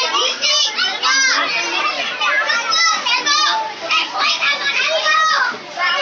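A group of young children playing and shouting over one another, with high-pitched voices and calls overlapping and no pause.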